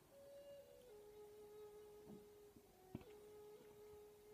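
Near silence with a faint held tone that steps down slightly in pitch about a second in and then holds steady, and a soft click about three seconds in.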